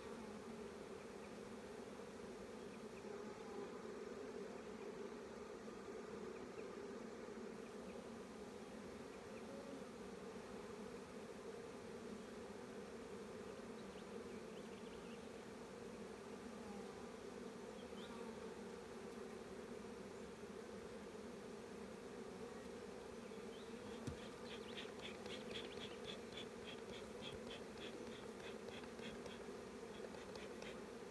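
Honeybees buzzing around an open hive: a steady, even, low hum from many bees.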